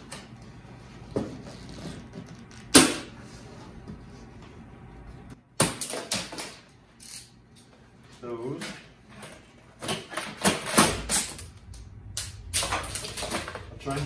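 Plastic packing straps around a wooden crate being cut and pulled free: a few sharp snaps and clicks, then a busier run of clicking, scraping and rustling of the strap in the second half.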